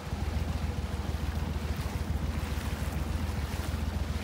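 Mud Buddy HDR 40 EFI surface-drive mud motor running steadily, a low, even drone under a steady hiss.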